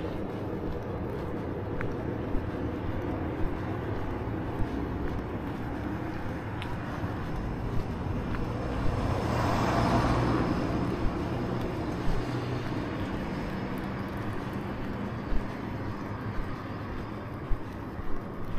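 A car passing on the road, its tyre and engine noise swelling to a peak about halfway through and fading away, over a steady hum of traffic. A few sharp knocks stand out briefly.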